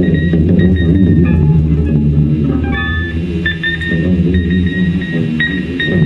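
Two electric guitars played live through amplifiers: a dense, droning low rumble with short high tones ringing out above it.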